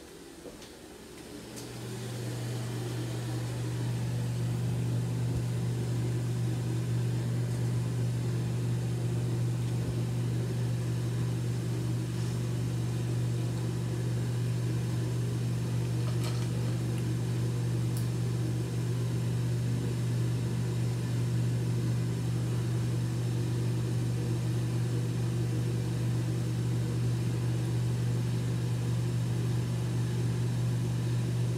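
A steady low electric hum, like a small motor or fan, that builds up over the first two seconds and then holds unchanged.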